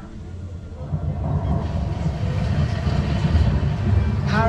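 Dark-ride car rolling along its track with a steady low rumble that grows louder about a second in.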